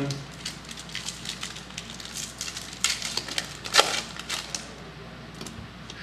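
Foil wrapper of a trading-card pack crinkling and tearing as it is opened, a run of short sharp crackles with the loudest about four seconds in.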